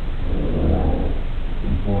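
A low, rough, growl-like sound over heavy hiss from boosted CCTV microphone audio, swelling and fading within about a second; the investigators say it does not sound human. A man's voice begins near the end.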